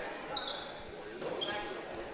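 Crowd murmur in a basketball gym, with a few short high squeaks typical of sneakers on the hardwood court.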